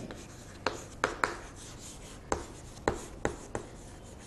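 Chalk writing on a chalkboard: a run of short, sharp taps and scratches at irregular intervals as a few words are chalked up.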